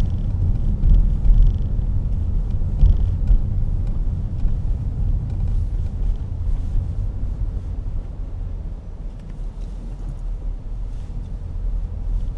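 Car cabin noise while driving: a steady low rumble of engine and tyres on the road, a little quieter in the second half.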